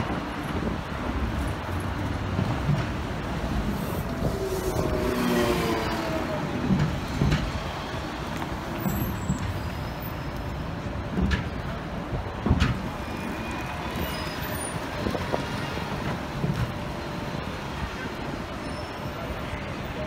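City street traffic: a steady wash of bus, taxi and car engines and tyres. A pitched, slightly gliding vehicle sound comes about four to six seconds in, and two sharp knocks come about eleven and twelve and a half seconds in, the second the loudest moment.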